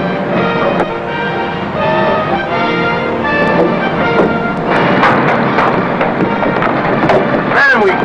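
Soundtrack music with sustained notes, joined about halfway by a crowd of men's voices talking and calling out at once.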